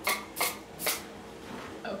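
Short scratchy, rattling strokes, about two a second, from a child working at a plastic mixing bowl of cake batter with a spoon and a sprinkles bottle; they stop about a second in.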